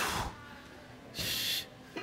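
A man's breaths during a stretching exercise: two short, sharp breaths, one at the start and one just over a second in.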